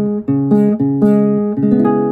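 Acoustic guitar sounding a D-flat minor seventh barre chord at the ninth fret: the root note on the low E string, then the whole chord, in several quick strikes. The last strike, near the end, is left ringing.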